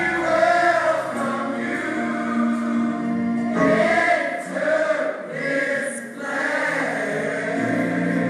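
Gospel church choir singing together in sustained phrases, with brief breaks between phrases a few times.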